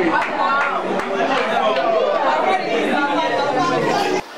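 A classroom full of students chattering, many voices talking over one another at once.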